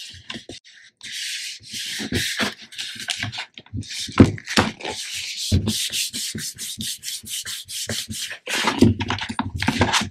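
Hands rubbing and smoothing patterned paper over a covered album cover, a hissing friction sound in two stretches (about a second in, and again from about five and a half to eight seconds). In between and near the end, soft knocks as the cardboard book is opened, turned and set down on the cutting mat.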